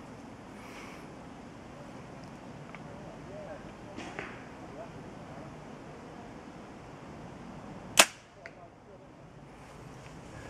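A compound bow being shot: one sharp, loud crack of the string and limbs as the arrow is released, about eight seconds in, followed by two faint clicks.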